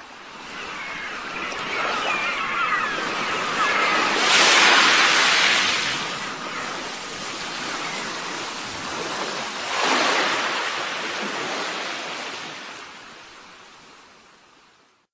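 Ocean surf: waves washing ashore, with two larger waves breaking about four and ten seconds in, the sound fading away near the end.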